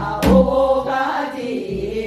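A group of women singing a Gyeonggi folk song (minyo) together in unison. A single sharp percussive stroke sounds about a quarter second in.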